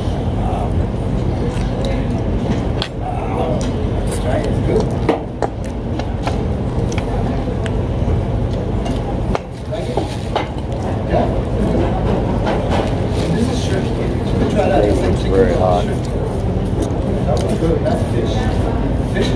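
Restaurant dining-room sound: indistinct diners' voices and occasional clinks of cutlery on plates over a steady low rumble.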